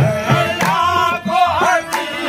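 Live qawwali: a male lead voice sings a bending melodic line over held harmonium chords, with a hand drum keeping a steady beat.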